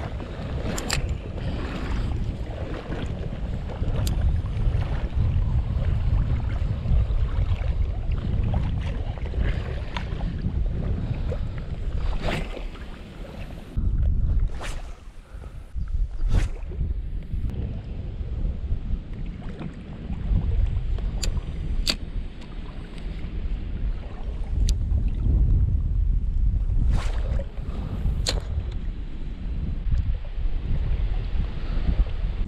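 Strong gusty wind buffeting the microphone: a heavy rumble that swells and eases. It drops briefly around the middle, and a few sharp clicks are scattered through it.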